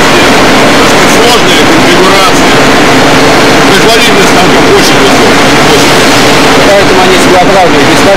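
Loud, steady machine-shop din with a CNC lathe running, turning a long steel shaft. Indistinct voices mix into the noise.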